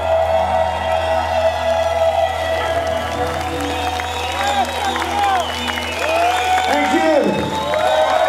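A rock band's last chord rings out live over a low bass drone while the crowd cheers, whoops and shouts, and the cheering swells about halfway through. The low drone cuts off near the end.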